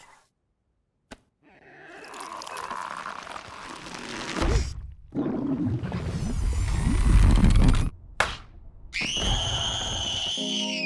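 Cartoon sound effects for an overfed bunny: a single click, then a gurgling, rising noise that swells into a loud low rumble, cut off by a sharp burst about eight seconds in. A child's high-pitched scream follows near the end.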